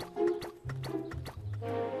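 Children's cartoon background music: held notes over a bass line, with short clicking knocks several times a second.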